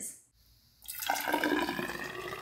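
Fizzy homemade ginger ale poured from a measuring cup into a tall glass hydrometer cylinder, splashing and foaming as it fills; the pour starts about a second in.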